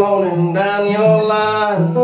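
Live acoustic roots band playing a passage without vocals: one long, slightly wavering note is held over a steady low accompaniment and slides down in pitch near the end.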